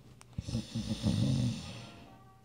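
A man's put-on snore: a low, drawn-out snoring sound with a breathy hiss, lasting about a second and a half and fading out.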